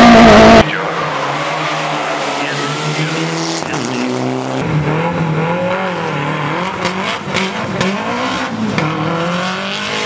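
A very loud, distorted onboard race-car engine cuts off after a split second, giving way to a rally car's engine at the start line. Its revs rise and fall repeatedly, then it launches and pulls away, with tyre squeal and several sharp cracks.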